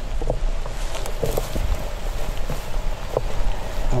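Footsteps brushing through tall grass, with scattered short rustles and steps over a steady low rumble of wind on the microphone.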